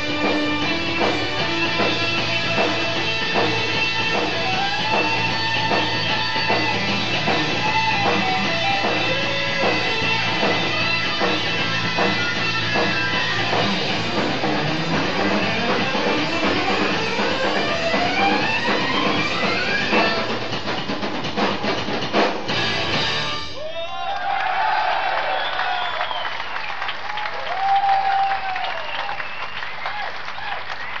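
Live rock band playing the close of a keyboard solo with drums, including a long rising pitch sweep, ending abruptly about 23 seconds in. Crowd cheering and shouts follow.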